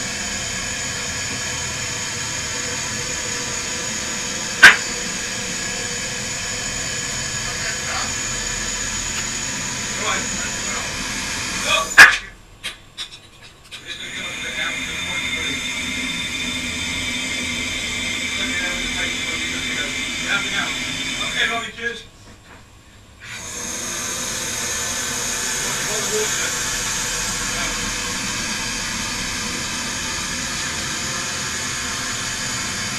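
Steady hiss of air inside a hyperbaric diving chamber under pressure, with a sharp click about four seconds in and a louder knock near twelve seconds. The sound drops away twice for a second or so.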